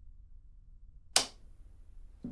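A single sharp click about a second in, dying away quickly, followed by a faint steady high-pitched whine.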